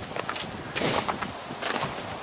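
Footsteps crunching on gravel: a few separate steps, under a second apart.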